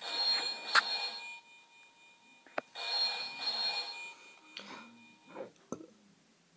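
Electronic Deal or No Deal game's small speaker playing a telephone-ring sound effect, two rings each about a second and a half long with a pause of about the same length between them: the banker calling with an offer. Fainter electronic sounds from the game follow near the end.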